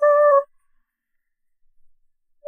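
A held note of background music for about half a second that cuts off suddenly, followed by silence.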